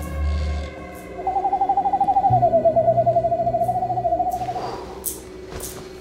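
Trilling owl call, one wavering note starting about a second in and held for about three and a half seconds, dipping slightly in pitch and then levelling off, over a low, sustained music score.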